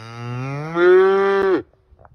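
A young black-and-white calf mooing once: one long, loud moo that rises slowly in pitch and cuts off about one and a half seconds in.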